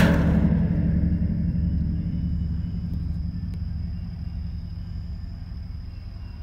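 A sudden deep boom that carries on as a low, ringing rumble, slowly fading, with a faint steady high whine underneath.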